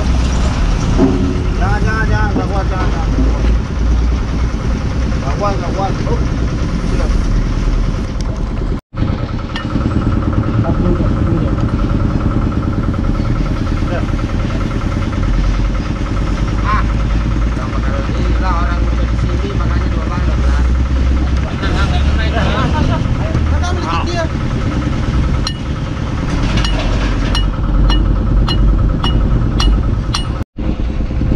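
A diesel engine running steadily at idle with a low rumble, under background voices. Near the end, light metallic clicks come about twice a second as the bottle jack's steel bar is worked.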